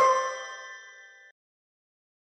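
The last chord of the outro music rings out and fades, then cuts off just over a second in.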